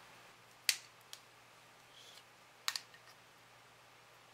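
A few sharp handling clicks as tubing and a yellow-handled hand tool are worked at a vacuum pump's fitting: one loud click under a second in, a lighter one just after, and a quick double click near the end. The pump itself is not running.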